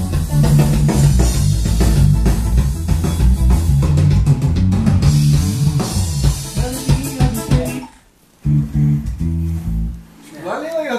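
Electric bass guitar playing a deep, rhythmic line over a backing track with drums. The music breaks off briefly about eight seconds in, comes back for a moment, then stops.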